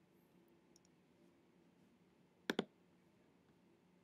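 A single computer mouse click, a quick press and release about two and a half seconds in, over faint steady room hum.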